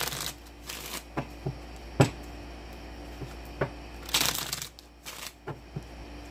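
A tarot deck being shuffled by hand: a few short bursts of cards rustling as they slide against each other, with several sharp taps in between, the loudest about two seconds in.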